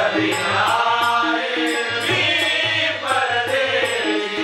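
Marathi devotional bhajan, sung by several voices to harmonium, tabla and small hand cymbals (jhanj) keeping a steady beat.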